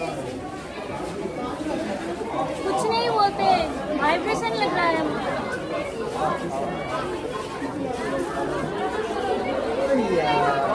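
Background chatter of several people talking at once, with nearer voices standing out about three to five seconds in.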